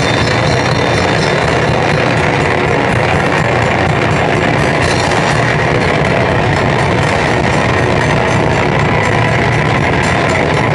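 Live rock band playing, loud and steady, in a heavy-metal style.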